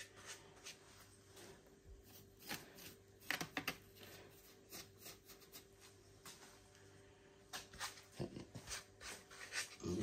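Faint scattered light taps and rubbing sounds of handwork on the build, over a faint steady hum.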